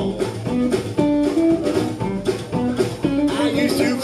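Live blues band playing an instrumental passage between vocal lines: electric guitar, upright bass and drum kit, with bending, wavering notes near the end.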